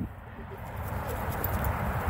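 Water splashing and streaming as a large wet Newfoundland dog climbs out of a pool up the exit ramp, building up about half a second in, with wind rumbling on the microphone.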